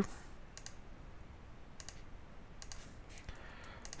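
Faint clicks of a computer mouse and keyboard, a few scattered short clicks, several in pairs, as a shape is drawn point by point with the pen tool and the eyedropper is picked.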